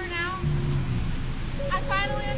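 A woman's short, high-pitched whimpering cries of distress, one at the start and another near the end, over a steady low hum.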